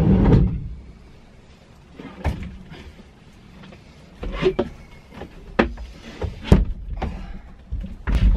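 A white desk knocking and bumping against the campervan's door frame and floor as it is lifted in and set down: a string of separate knocks, the sharpest about six and a half seconds in. A loud rush of noise stops about half a second in.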